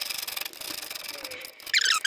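Small ratchet wrench clicking rapidly as it runs a nut down a headlight mounting stud, with a louder burst of clicking near the end.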